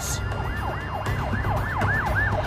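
Emergency-vehicle siren on a fast yelp, its pitch sweeping up and down about four times a second, over a low rumble.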